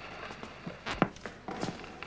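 Footsteps and shuffling on a wooden stage floor: a handful of irregular sharp knocks and scuffs, the clearest pair about a second in.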